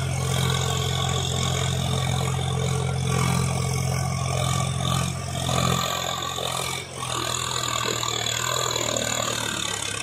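Swaraj 735 FE tractor's three-cylinder diesel engine running under load as it hauls a fully loaded trolley of soil, a steady low drone. The drone changes about six seconds in, with a brief drop in loudness just before seven seconds.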